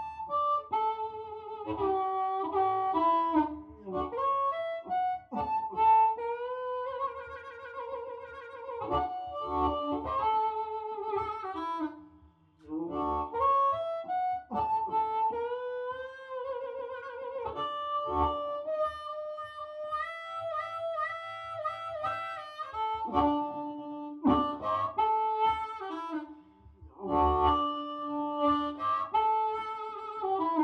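Diatonic blues harmonica played cupped around a Shaker Mad Cat harp mic and amplified: blues phrases with chords, bent notes that slide in pitch and wavering trills, broken by short breaths of silence about twelve seconds in and near the end.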